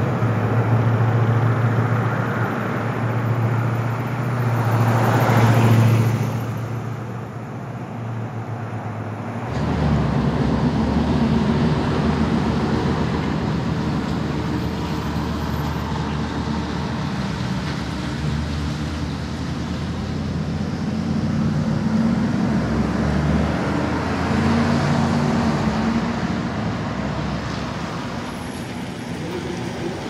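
Road traffic with a steady low engine hum. A vehicle passes close by about five to six seconds in, and the sound changes abruptly about nine and a half seconds in.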